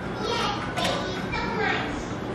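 Young children's voices, wordless chatter and calls during play.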